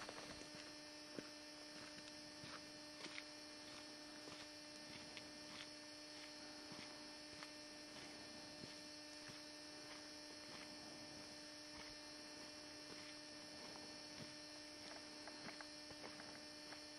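Near silence: a faint steady electrical hum and hiss on the tape recording, with scattered faint ticks.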